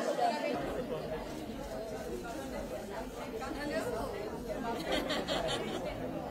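Indistinct chatter: several people talking over one another in a crowd, no single voice clear.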